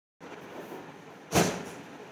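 A single sudden thump about one and a half seconds in, over steady low room noise.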